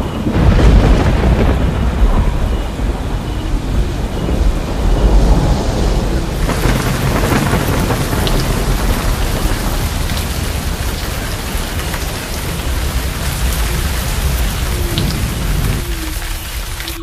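Heavy rain pouring, with thunder rumbling low through the first few seconds; from about six seconds in the rain's hiss turns brighter and steadier.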